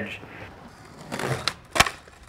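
Skateboard on concrete: a rolling rumble of the wheels, then sharp clacks of the board near the end, the last one the loudest.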